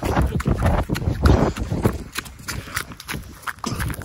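Running footsteps over dry leaves and grass, an irregular patter of footfalls, with rumbling handling and wind noise on the phone's microphone, loudest about a second in.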